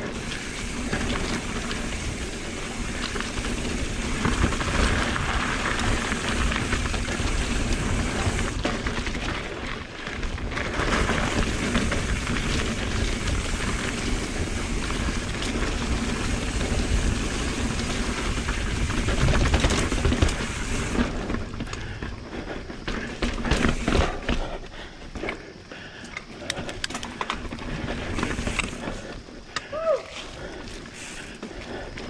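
A mountain bike rolling fast down dirt singletrack: dense noise from wind on the camera microphone and tyres on dirt and rock. About 21 seconds in the noise drops, leaving scattered knocks and clatter as the bike rolls over rocks.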